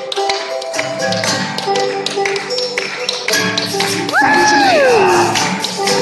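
Banjo and acoustic guitar playing an instrumental break of a bluegrass-style hoedown tune over steady tapping percussion. About four seconds in, a loud high whoop jumps up and then slides down in pitch over about a second.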